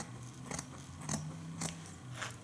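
Scissors snipping into black craft felt: a few short, sharp snips about half a second apart.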